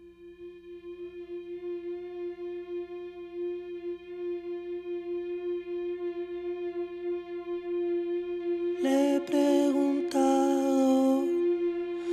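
A band's opening: a single sustained instrumental note swells slowly in volume with a gentle regular pulse. About nine seconds in, a second lower note and brighter sound join it, forming a held chord.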